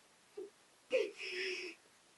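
A girl's voice: a short vocal sound, then about a second in a brief cry that settles into a drawn-out high note held for about half a second.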